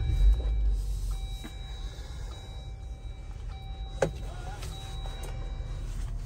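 Jeep Wrangler's engine running at idle, heard from inside the cab as a steady low rumble that swells just after the start. There is a sharp click about four seconds in.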